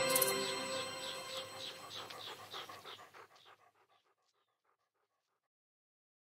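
The tail of a logo jingle fading out, with a dog panting in quick, even breaths, about four a second, that fade away over about three seconds; then silence.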